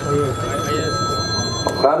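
A steady, high electronic ringing tone with several overtones, like a phone ringing, sounds over a man's voice and stops about a second and a half in.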